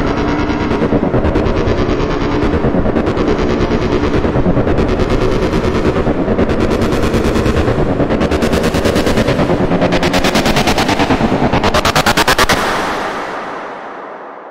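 Electronic riser sound effect: a dense noise build chopped into rapid, even pulses, with a swell of hiss about every two seconds. Near the end it sweeps upward in pitch, then fades away.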